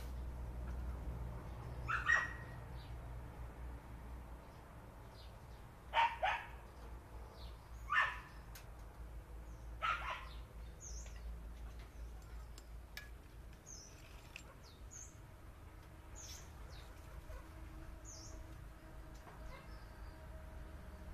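Four short, loud animal calls: one about two seconds in, then three more two seconds apart from about six seconds in, over a steady low hum. Faint high chirps follow in the second half.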